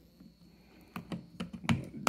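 A Nest thermostat's plastic display unit clicking and tapping against its wall base plate while being lined up and pressed on: about five sharp clicks, starting about a second in.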